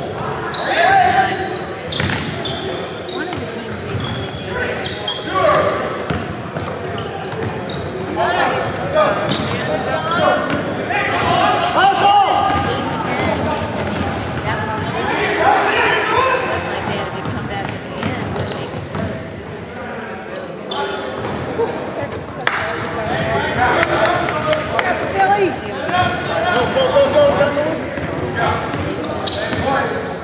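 A basketball dribbled on a hardwood gym floor, thudding repeatedly, with indistinct voices calling out, all echoing in a large hall.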